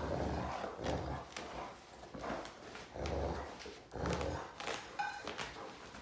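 Two Great Danes growling in play as they tug at a blanket, in short low bursts about once a second, with a few sharp clicks between them.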